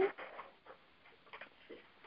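Quiet gap between speakers: a voice trails off at the start, then faint background noise with a few soft, scattered clicks.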